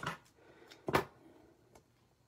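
Scissors at a craft desk: one sharp click about a second in, with a couple of faint ticks around it, as baker's twine is snipped and the scissors are put down on the desk.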